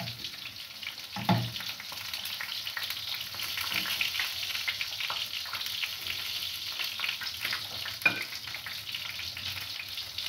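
Chicken feet, beef and fish frying together in a pan: a steady crackling sizzle. A knock of metal tongs on the pan about a second in is the loudest sound, and there is a sharp clink near eight seconds.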